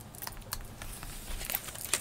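Tarot cards being picked up and handled: faint rustling and light clicks of card stock, a few more of them near the end.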